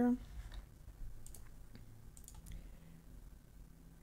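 Faint computer mouse clicks, a few scattered single clicks.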